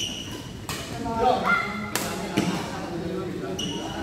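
Badminton rally in an echoing indoor hall: several sharp racket hits on the shuttlecock, the clearest about two seconds in, with brief high shoe squeaks on the court floor and voices calling out.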